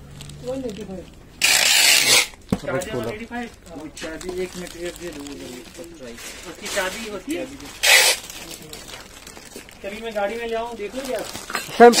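Mostly people talking, with two short rustling bursts, about two seconds in and again near eight seconds.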